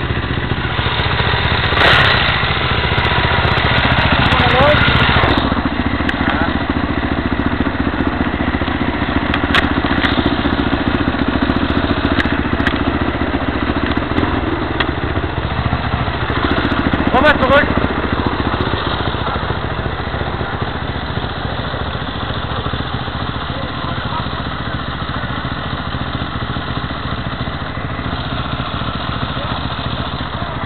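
Single-cylinder supermoto motorcycle engines idling steadily, heard dull and without treble through a cheap small camera's microphone. A few sharp knocks and rustles of the camera or clothing come through, and a short voice is heard just past halfway.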